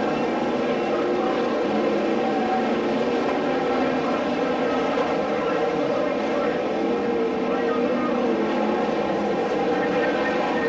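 A field of winged sprint cars racing on a dirt oval: several V8 engines running together at high revs in a steady, unbroken drone.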